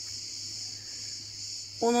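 A steady high-pitched hiss that starts abruptly at the beginning and holds level throughout, with a faint low hum beneath.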